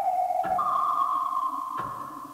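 Electronic tape music from 1969. A held pure tone gives way about half a second in to a higher held tone, with a short click at the change and another near the end.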